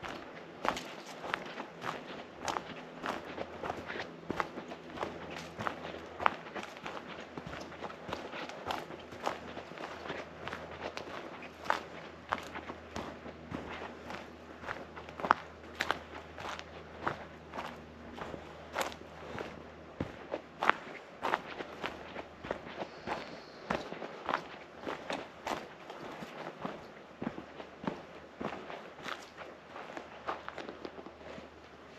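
Footsteps of a person walking at a steady pace along a dirt forest trail, about two steps a second, each step a short crunch on the earth and forest litter.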